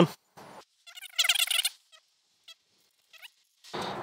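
Zip on a fabric tester carry case pulled open in one quick run of about two-thirds of a second, about a second in. A few light ticks and a soft rustle of the case being handled follow near the end.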